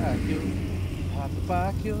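A man talking over a steady low engine hum that weakens about halfway through.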